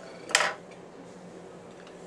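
A single crisp snip of small scissors cutting through rubber legs.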